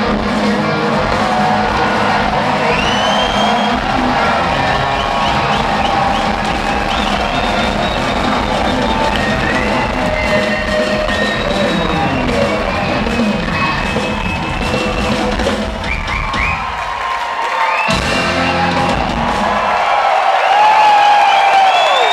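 Live rock band playing the closing section of a song in a concert hall, with the crowd whooping, whistling and cheering over it. The bass and drums drop away about sixteen seconds in, come back briefly, then fall away again as the cheering rises.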